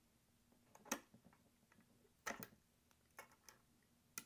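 A few faint, sharp clicks against near silence: metal tweezers popping the front I/O ports' flex-cable connectors off a Mac mini logic board. The clearest click comes about a second in, a close pair a little past two seconds, and fainter ticks follow.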